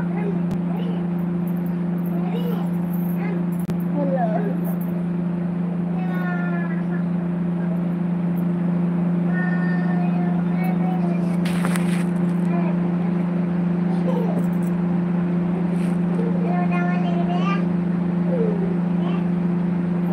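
A steady low hum, with faint voices heard now and then over it.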